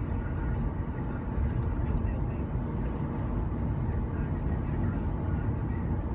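Steady road and engine noise of a car driving along a city street, heard from inside the cabin as a low, even rumble.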